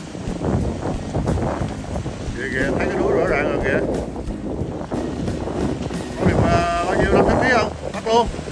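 Surf breaking and washing over rocks with wind buffeting the microphone, and voices calling out twice, about halfway through and near the end.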